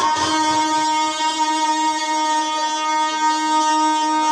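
A male reciter holding one long, steady note of a sung manqabat through a public-address microphone.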